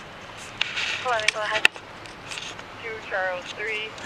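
Short, indistinct voice sounds, some rising in pitch, with a single sharp click about a second and a half in.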